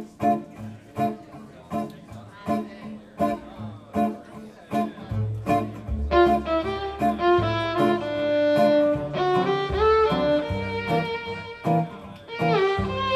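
Swing band starting a tune: acoustic guitar chords strummed in a steady rhythm, upright bass coming in about five seconds in, and a fiddle taking up a gliding melody from about six seconds.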